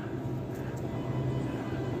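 Large store's room tone: a steady low hum from the ventilation, with faint ambient noise.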